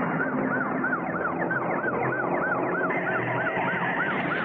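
Police car siren on a fast yelp, its pitch sweeping up and down about three to four times a second, over a steady rush of noise.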